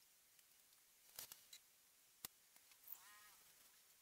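Near silence: room tone, broken by a few faint clicks and one short, faint pitched sound about three seconds in.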